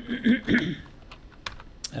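Computer keyboard typing: a handful of separate, irregular keystrokes. It opens with a short, loud cough.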